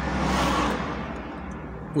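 Road noise heard from inside a moving car: a rushing whoosh swells in the first half second and fades away, over the car's steady low hum.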